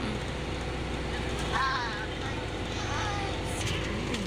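Car engine idling, a steady low hum heard from inside the cabin, with faint voices over it.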